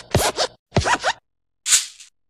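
Sound effects for an animated intro: a quick run of about four short, separate effects in two seconds, each falling in pitch, the last a hissy one near the end.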